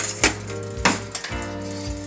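A metal spoon stirring and scraping in a stainless steel pan of heating evaporated milk, with two sharp clinks, one about a quarter second in and one just before a second in, as cornstarch is stirred in to thicken it.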